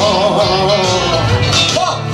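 A live band playing the closing instrumental bars of a country song, with guitar carrying the melody over a steady bass.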